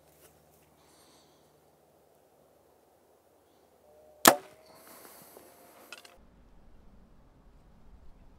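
A Hoyt VTM 34 compound bow shot: one sharp, loud crack of the string as the arrow is released about four seconds in, followed by a short hiss and faint ringing. A smaller tick comes about a second and a half later.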